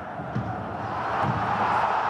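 Football stadium crowd noise, a broad roar that swells over the two seconds as an attack reaches the goalmouth.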